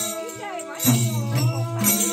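Group singing of a Nepali Bhailo festival song, with a deep drum struck about once a second and jingling on each beat.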